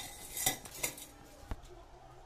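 Light metallic clinks and knocks from a stainless steel railing pipe being handled and set into a hole in a stone stair tread: a few separate strikes with a brief ring, the loudest about half a second in.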